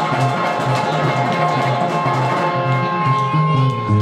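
Two guitars playing a live blues instrumental passage: an electric guitar over a line of low stepping notes. About halfway through, the upper notes thin out, leaving a long held note over the low line.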